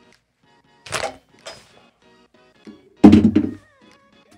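A hand-held PEX crimp tool clicks about a second in as its jaws are opened after the crimp, then a loud, heavy thunk about three seconds in as the tool is set down on the desk. Soft background music runs underneath.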